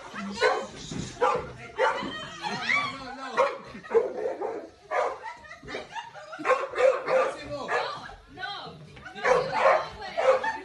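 A pit bull-type dog barking and yipping in short, irregular bursts, over people's voices.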